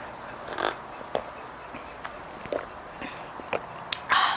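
Someone drinking from a mug: a few soft sips and swallowing gulps with small clicks, spaced out over several seconds.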